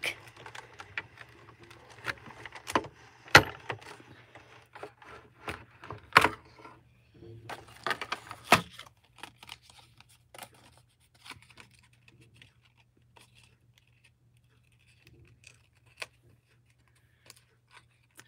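Cricut Cuddlebug manual die-cutting machine cranked to roll the die, paper and plates back through its rollers for a second pass on an intricate die. It gives a run of sharp clicks and crackles over the first several seconds, then only a few scattered light ticks.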